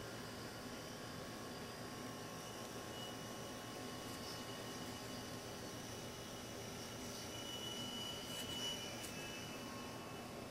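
Faint steady background hiss, room tone with no distinct sound event.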